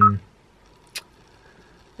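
The tail of a man's hesitant 'um', then a quiet pause in his speech with a single short click about a second in.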